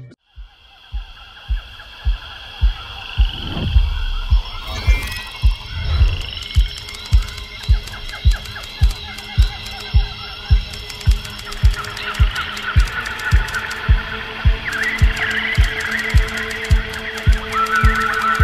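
Night-time pond ambience of frogs and insects chirring, over a low thudding pulse about twice a second that starts soft and settles into a steady beat.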